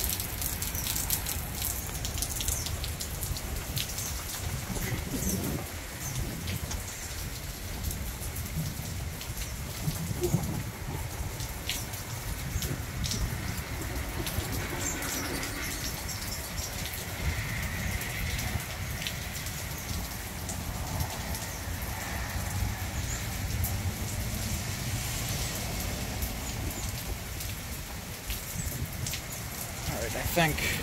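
Steady heavy rain with gusting wind rumbling on the microphone, and scattered sharp clicks throughout.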